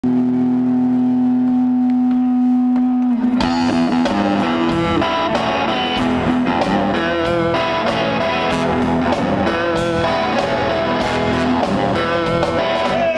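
Live Chicago blues band: a single note is held for about three seconds, then drums, bass guitar and electric guitar come in together and play on.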